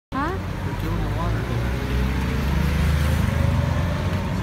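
Street traffic: a steady low rumble of vehicle engines, with people's voices calling out near the start and now and then.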